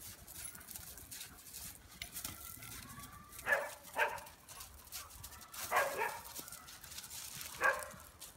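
A dog barking during play: five short barks, first a pair about three and a half seconds in, then another pair near six seconds and a single bark near the end.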